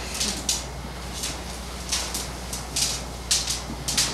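Long flexible tubing scraping and rubbing in a series of short, irregular scrapes as it is bent and pulled through itself to tie a trefoil knot, over a steady low hum.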